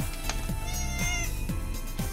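A domestic cat meowing once, about halfway through, over background music with a steady beat.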